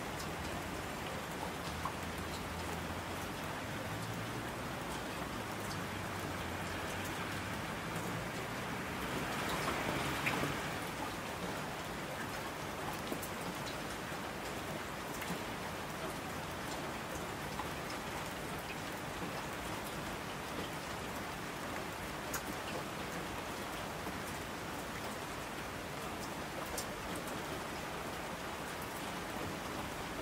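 Steady rain falling, a dense even hiss with individual drops ticking through it. It swells briefly about a third of the way in, with a faint low rumble underneath during the first third.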